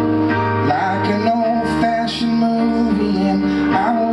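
Live solo song on electric keyboard: sustained chords over low bass notes, which change about a second and a half in. A man's voice slides through short wordless vocal lines between the sung verses.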